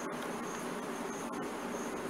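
Steady background hiss with a faint high-pitched chirp pulsing about twice a second.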